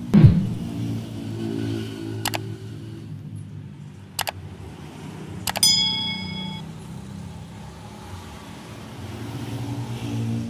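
A motor vehicle engine running with a low, steady hum. Just after the start a loud sound falls quickly in pitch. There are a few sharp clicks, and the last one, about five and a half seconds in, is followed by a metallic ring lasting about a second.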